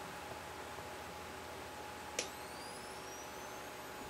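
Nikon SB-600 speedlight firing at full power: a single sharp click about two seconds in, followed by the flash's high recharge whine rising steadily in pitch as it recharges.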